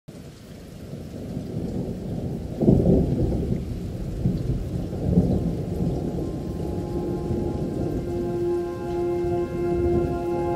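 Rain and thunder, a low steady rain with rolls of thunder, the loudest about three seconds in and another around five seconds. A sustained music chord fades in under it in the second half.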